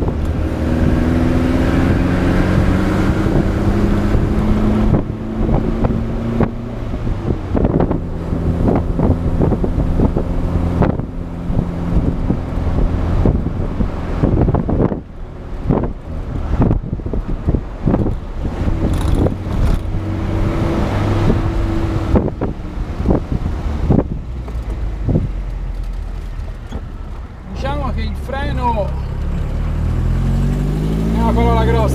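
1972 Alfa Romeo Spider 1600's twin-cam four-cylinder engine pulling on the move, its pitch climbing through the revs and dropping at each gear change. Near the end, quick rises and falls of pitch come one after another.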